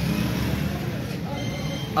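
A steady low background rumble with faint voices.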